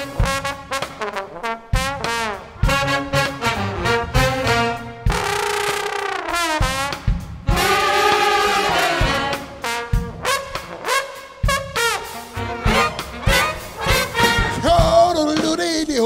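Big band jazz with trombone out front over the brass and saxophone sections. It opens with short punchy chords, holds two long chords in the middle, then goes back to short stabs.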